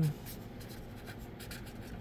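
Felt-tip marker writing on paper with light pressure, a faint scratch of short pen strokes.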